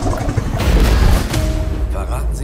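Film-trailer sound design: music over a deep low rumble, with a loud rushing noise burst and boom from about half a second to just past one second in.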